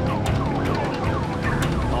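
Police car siren in a fast yelp, about four up-and-down sweeps a second, over a steady low engine and road rumble.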